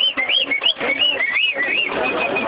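Birds calling: many quick whistled chirps, each rising and falling, about three a second and overlapping one another, over a fainter low murmur.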